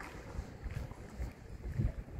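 Wind buffeting a phone's microphone outdoors, heard as an irregular low rumble with a few soft bumps from the phone moving as it is carried.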